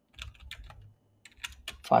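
Typing on a computer keyboard: a quick string of keystroke clicks, coming faster in the second half.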